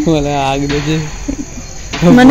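A person's voice holding one drawn-out, steady-pitched sound for about a second, then dropping away. A steady high chirring of insects runs behind it.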